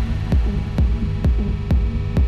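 Techno playing in a DJ mix: a steady four-on-the-floor kick drum about twice a second, under a sustained droning synth chord and a high hiss of hi-hats.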